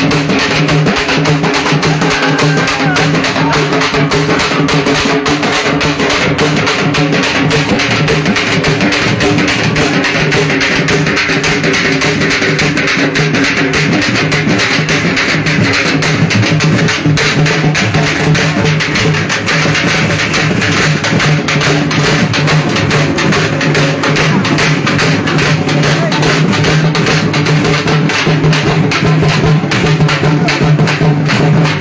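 Loud street-procession music: dense, fast drumming over steady held notes.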